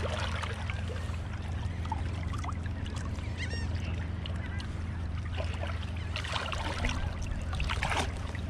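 Shallow seawater sloshing around a tarpon held in the water to revive it, with a few splashes near the end. A steady low hum runs underneath, and a bird calls briefly about three and a half seconds in.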